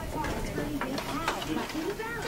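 Indistinct background voices: people talking off-mic, too low and muffled for words to be made out.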